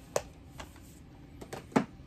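Plastic Blu-ray cases being handled: a few short, sharp clicks and knocks, the loudest just before the end.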